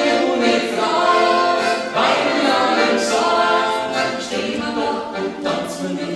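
A woman singing a traditional Macedonian folk tune with Bavarian-dialect lyrics, with piano accordion accompaniment, in sung phrases that start anew about two and three seconds in.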